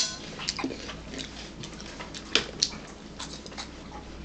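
Raw celery being chewed close to the microphone: a series of crisp crunches, the loudest right at the start and two more about two and a half seconds in.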